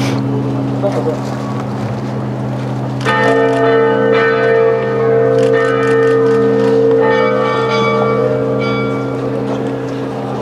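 Church bells ringing: a deep, steady ringing continues, and about three seconds in a bell is struck again and rings on for several seconds.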